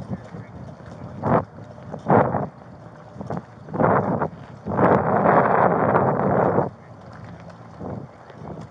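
Rustling and rubbing on a body-worn camera's microphone as the wearer walks: short scuffs at about one, two and four seconds in, then one longer rub of about two seconds.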